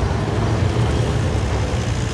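Motor vehicles driving along: a steady, loud low engine rumble with road noise.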